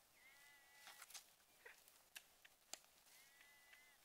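Two faint, drawn-out animal calls, each under a second long and about three seconds apart, with a few light clicks in between.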